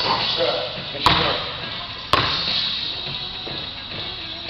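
A 2-pound weighted basketball bouncing on a gym floor: two sharp, echoing bounces about a second apart.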